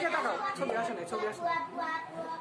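Several people talking over one another, with no one voice standing out.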